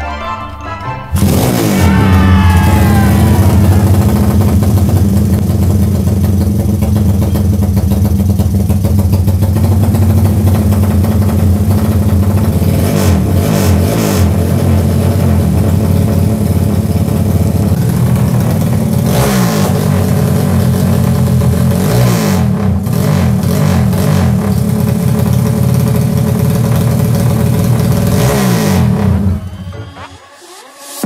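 A Honda Tiger single-cylinder four-stroke motorcycle engine, bored out to 230 cc with a 34 mm carburettor for drag racing, catches on a kick start about a second in. It then runs loudly with several throttle blips that rise and fall in pitch, and cuts off suddenly near the end.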